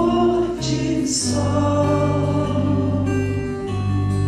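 Live acoustic ballad: a male voice singing long held notes over strummed acoustic guitar.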